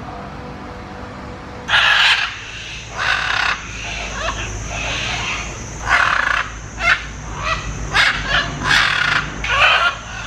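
Blue-and-yellow macaws squawking: about ten loud, harsh calls, some in quick succession, starting a little under two seconds in.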